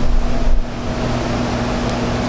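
A steady hum with hiss, a constant background drone in the room or sound system, with low rumbling thumps in the first half second.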